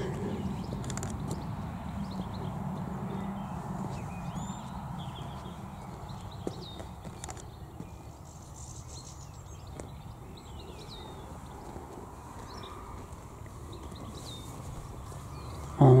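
Footsteps on a tarmac driveway, heard as faint irregular ticks, over a steady low outdoor rumble. Faint bird chirps come through now and then.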